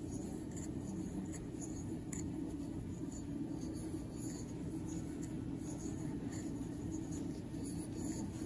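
Soft rustling and light scratching of yarn being pulled through stitches by a crochet hook, with small scattered ticks, over a steady low hum.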